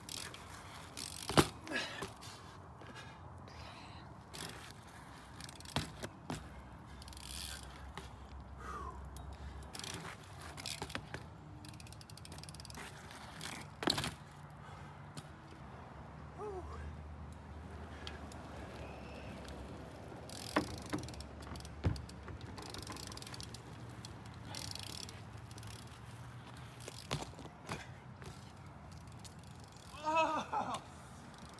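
BMX bike rolling and spinning on an asphalt driveway, its tyres rolling with scattered sharp knocks as the wheels come down from full-cab spin attempts. The loudest knock is about a second and a half in, with several more through the rest.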